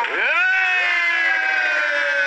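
Voices of a welcoming group singing, holding one long drawn-out note that slowly falls in pitch.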